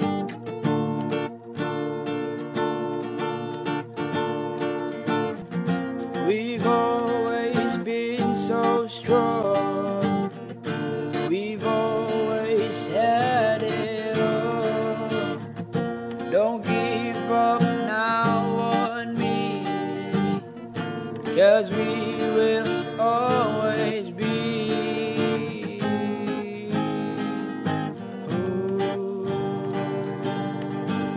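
Recorded Filipino rock band song with strummed acoustic guitar, and a lead singing voice from about six seconds in until near the end.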